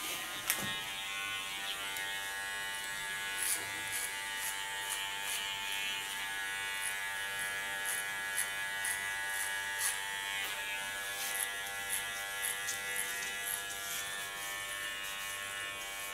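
Electric hair clipper fitted with a number one clipper comb running with a steady buzz while cutting short hair at the nape. Short, crisp crackles through the buzz as the blades pass through the hair.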